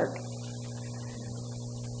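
Steady low electrical mains hum with faint higher overtones, unchanging throughout.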